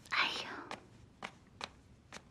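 Clothes being handled while packing a suitcase: a short rustling swish of fabric, then three light clicks, like a hanger and case parts being knocked.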